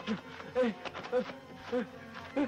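A man groaning in pain in short rising-and-falling moans, about two a second, with a few sharp knocks among them.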